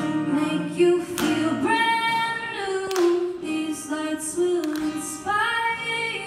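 Female vocalist singing a slow melody of long held notes, accompanied by an acoustic guitar, in a live duo performance.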